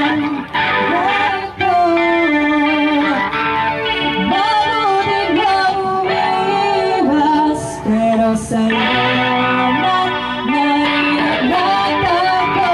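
Live band music: a woman singing a melody into a microphone over electric guitar.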